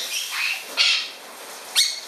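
A wet galah flapping its wings on a wire cage, with a brief rush of noise about a second in, then a short harsh parrot squawk near the end.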